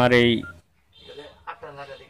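A man's voice, then one short keypad beep from a Samsung B310E-type feature phone as a key is pressed, about half a second in, with faint speech after it.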